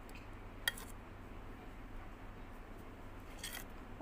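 Spoon stirring a thick mix of topping powder and milk in a stainless steel bowl: a faint wet scraping, with one sharp click of the spoon on the bowl less than a second in and a few quick clicks near the end.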